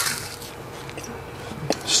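Crunching and chewing of a freeze-dried Jolly Rancher, the puffed, airy candy breaking up in the mouth. The crunch is densest in the first half second and then settles into quieter chewing with a couple of faint clicks.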